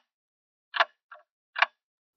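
Ticking-clock sound effect for a video countdown: two sharp ticks about 0.8 s apart, with a softer tick between them, and silence in the gaps.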